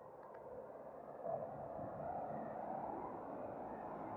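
Street ambience with a car driving past, its engine and tyre noise swelling about a second in and holding steady.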